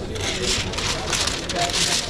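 A sheet of greaseproof paper being handled and spread flat on a chopping board with gloved hands, rustling and crinkling in three bursts, the last the loudest.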